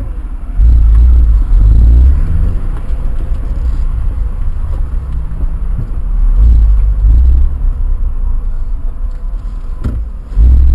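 Car engine heard from inside the cabin, driving slowly in a low gear. The deep rumble swells in two bursts of throttle, about half a second in and again around six seconds, with the pitch rising a little as it pulls.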